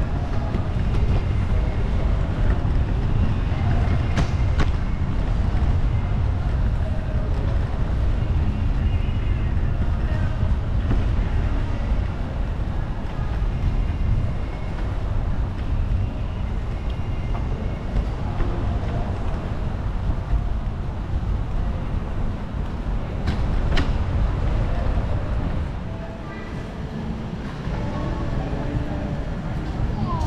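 Wind buffeting the microphone: a loud, uneven low rumble that eases for a moment near the end, with faint distant voices underneath.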